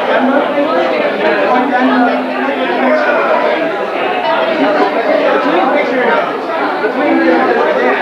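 Crowd chatter: many voices talking over one another at once in a hall, a steady murmur with no single clear speaker.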